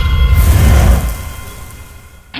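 Closing hit of a production-logo intro: a loud cinematic boom with a deep rumble and a whooshing swell that fades away over about a second and a half.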